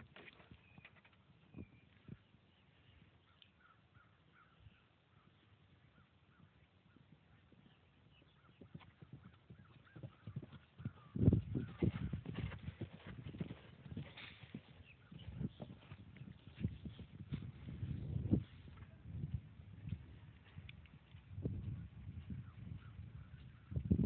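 Hoofbeats of a horse cantering on grass, barely audible at first, then a rhythm of low beats that grows louder from about ten seconds in as the horse comes close.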